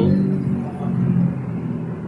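A steady low hum from a running motor or engine, holding one pitch throughout.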